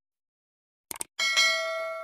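A quick double click just before a second in, followed at once by a bright bell ding that rings on and slowly fades: the mouse-click and notification-bell sound effects of an animated subscribe button.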